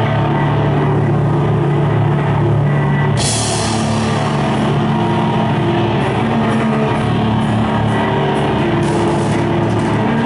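Live groove metal band playing: electric guitar, bass guitar and drum kit together at full volume, with a bright cymbal wash coming in suddenly about three seconds in.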